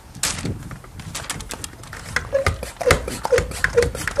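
Hand pump of a garden pressure sprayer being worked to build pressure before watering, a short squeak on each stroke about twice a second from about halfway in, with clicks and rustling from handling.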